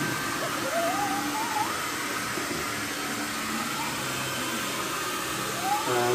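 Steady whooshing hum of an electric blower or fan running without a break, with no clear strokes or knocks.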